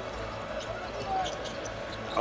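Basketball arena ambience during play: steady crowd noise with faint voices and the odd ball bounce.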